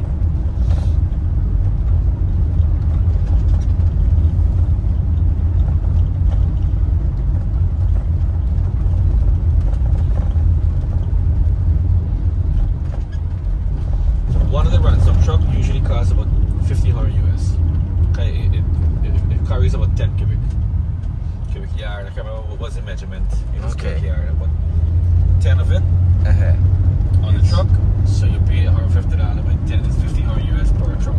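Inside a moving car: a steady low rumble of engine and road noise while driving, with faint indistinct voices over it in the second half.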